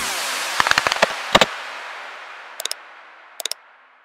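Channel outro sound effects: the jingle's echoing tail fading out under a scatter of short pops and clicks. There is a cluster in the first second and a half, then two brief double pops later on.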